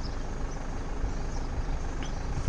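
Steady low outdoor rumble with no distinct events, the kind of hum that rises from a city and its traffic below a hilltop.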